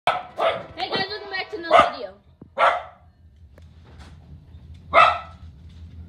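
A dog barking in a string of sharp barks, about six in the first three seconds and one more near the five-second mark. Under them is a low, steady rumble that grows from about halfway through, from the passing diesel freight locomotive.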